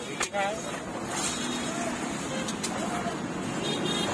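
Roadside traffic noise with people talking in the background, and a few brief clicks.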